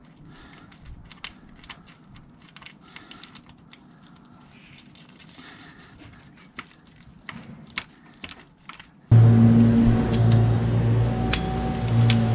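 Faint, scattered metallic clicks and ticks as a motorcycle's oil drain plug, fitted with a new sealing washer, is threaded back into the engine by hand. About nine seconds in, a loud steady droning hum cuts in abruptly.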